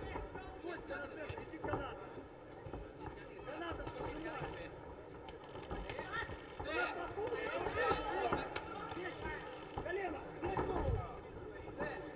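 Voices shouting and calling out from a kickboxing arena crowd, with a few dull thuds of punches and kicks landing.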